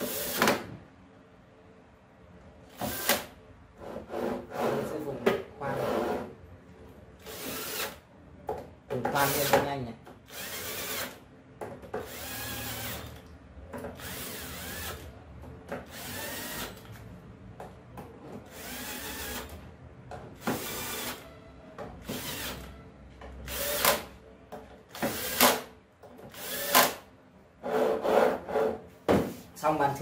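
Cordless drill-driver running in many short bursts of about a second each, with pauses between, driving countersunk M5 screws down into a metal plate on a CNC machine's linear-rail carriage.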